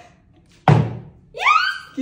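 A partly filled plastic water bottle flipped and landing upright on a wooden table with a single sharp thunk, about two-thirds of a second in. A voice calls out just after.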